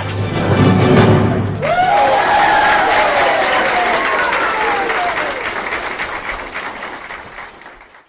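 Audience applause with music laid over it. A melody of long, slowly gliding notes comes in about a second and a half in, and the whole fades out near the end.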